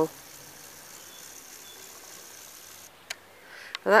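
Faint, steady background hiss of an outdoor recording with one sharp click about three seconds in; a woman's voice is heard briefly at the start and again just before the end.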